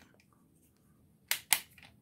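Two short, sharp clicks of the plastic Dino Fury Morpher toy being handled, about a second and a half in and a quarter second apart, with a few faint ticks after.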